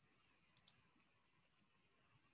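Three quick, faint computer mouse clicks a little past half a second in, with near silence around them.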